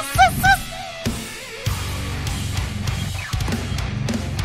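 Heavy metal song playing, with fast, dense drumming driven by rapid bass-drum hits. A man laughs loudly over it in the first half second.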